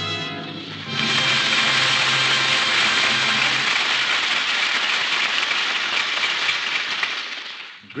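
Studio audience applauding, which swells in about a second in as the end of an orchestral chord dies out, holds steady, then fades away near the end.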